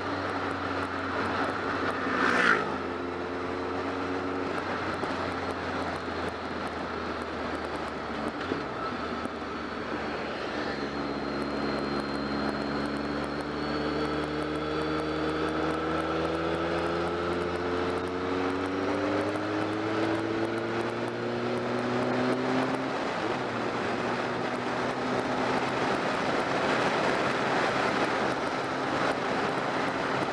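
BMW motorcycle engine under way with a steady wind rush. Its pitch holds steady for the first several seconds, climbs gradually for about ten seconds as the bike accelerates, then drops and settles. A brief sharp sound with a falling pitch, the loudest moment, comes about two and a half seconds in.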